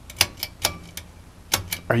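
Pull-string ceiling light switch being yanked again and again, giving about six sharp clicks. The light does not come on because the house has no electricity.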